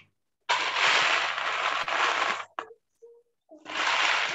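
Crackling, rustling noise in two bursts: one about two seconds long, and a second starting near the end.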